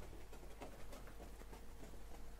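Faint scattered patter and light clicking of a pet ferret moving about, over a faint steady hum from a laptop.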